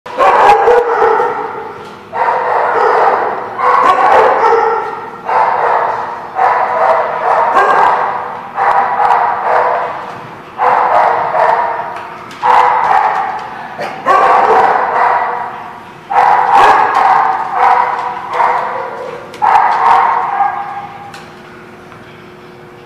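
A dog barking loudly and repeatedly, about a dozen barks one to two seconds apart, each dying away over a second or so in a hard-walled room. The barking stops about a second before the end.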